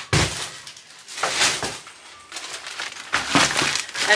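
Shopping being handled: plastic bags and packaging rustle and clatter in three short bursts.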